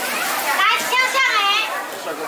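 Voices in a crowded hall, with one high-pitched voice calling out in a wavering phrase from about half a second in until near the end.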